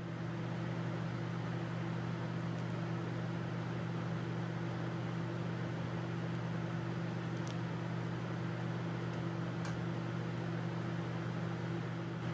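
Laminar flow hood blower running steadily: a constant rush of fan noise over a low hum, with a few faint ticks.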